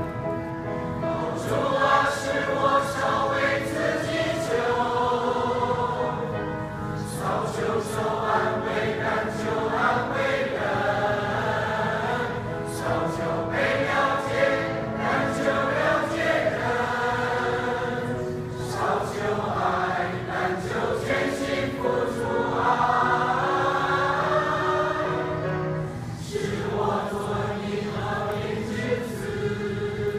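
Mixed choir of men and women singing a hymn in Chinese, in phrases a few seconds long with brief pauses for breath between them.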